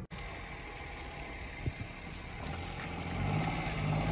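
Suzuki Alto's small three-cylinder engine running steadily with a low hum, growing louder near the end.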